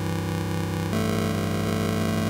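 Bitwig Polysynth played through an FX Grid sample-rate degrader whose clock follows the pitch of the last note played: a sustained, gritty, aliased synth tone that jumps to a new pitch about a second in as the next note retunes the sample rate.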